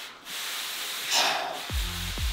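Paper plates sliding across carpet under the hands, a short rubbing hiss about a second in, with background music whose deep bass beats come in near the end.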